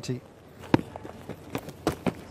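Footsteps of a cricket bowler running in to bowl on turf: a few sharp thuds, mostly in the second half.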